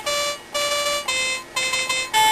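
Electronic keyboard playing a slow instrumental phrase of four held notes, about half a second each with short gaps, two on one pitch and then two a little lower, each with bright, steady overtones.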